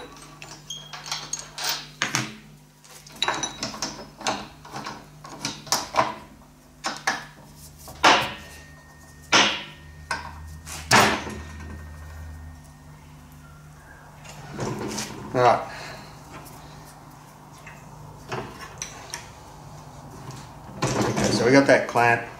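Metal clicks, clinks and a few sharp knocks as a T-handle hex key works the bolts and the steel die plates of a bench-mounted bar bender are handled and reseated. A low steady hum runs underneath.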